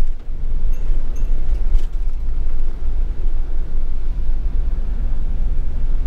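Steady low rumble of a camper van on the move, heard inside the cab: engine, tyre and road noise. A few faint light clicks or rattles come in the first couple of seconds.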